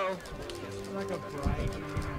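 Background music with long held tones and a few soft low thumps.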